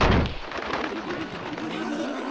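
A loud, sudden sound right at the start, then a bird cooing over and over as eerie forest ambience.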